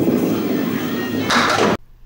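A candlepin ball rolling down the wooden lane with a steady rumble, then a brighter clatter into the pins near the end, before the sound cuts off suddenly.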